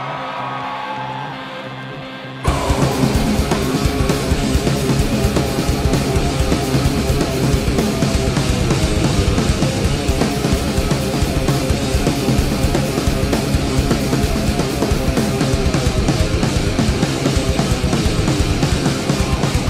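Live heavy rock band: a steady low drone, then about two and a half seconds in the full band comes in suddenly, with distorted electric guitars and a drum kit playing hard and dense.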